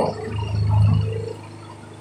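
A low rumble that swells about half a second in and fades after a second, over a steady low hum: handling noise from the phone being swung around.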